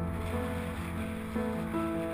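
Solo piano music, with new notes and chords struck every half second or so.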